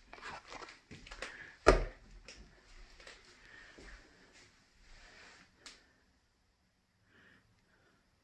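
Wreath-hung pantry door being opened, with a sharp knock about two seconds in, followed by soft rustling and small clicks that die away about six seconds in.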